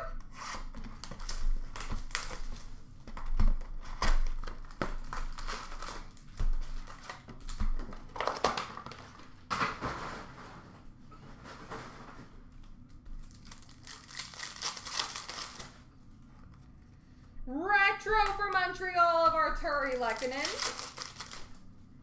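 Hockey card packs being handled and torn open: a run of crinkling rustles and short rips, with a longer tearing hiss about fourteen seconds in. A voice sounds briefly near the end, its words not made out.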